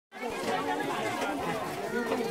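Crowd chatter: many people talking at once, their voices overlapping into an indistinct babble.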